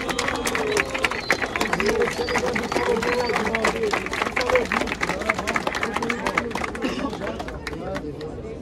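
Crowd cheering, shouting and clapping in answer to the host's call: a vote by noise for one of the two MCs in a freestyle rap battle. The noise eases slightly near the end.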